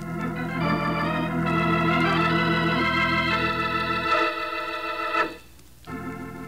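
Organ music bridge from a radio drama: held chords that change and swell, ending on a short accented stab about five seconds in, then a new sustained chord starts just before the end.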